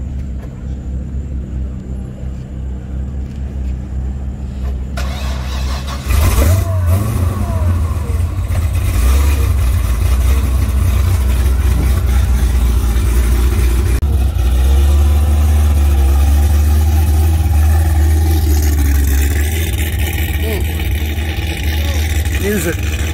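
Supercharged V8 of a C6 Corvette ZR1, built with aftermarket heads, cam and a Kong supercharger on E85, starting about six seconds in and then idling loudly with a deep, heavy exhaust. It gets louder for a few seconds in the second half.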